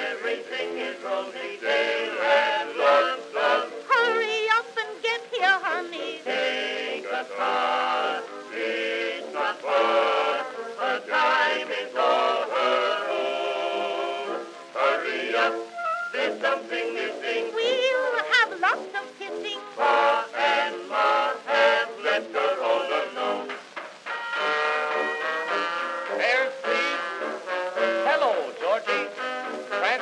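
Orchestral interlude from an acoustic-era Edison Amberol cylinder recording: a small studio orchestra with brass carrying the tune. The sound is thin, with no deep bass.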